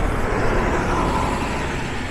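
A city transit bus driving past at close range: engine rumble and tyre noise, fading slightly toward the end.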